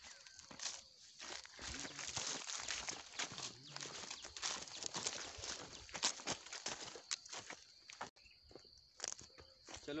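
Footsteps crunching and rustling through dry leaves on open ground, an irregular run of short crackles. A faint steady high tone enters near the end.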